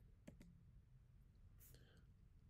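Near silence: room tone with two faint clicks close together shortly after the start.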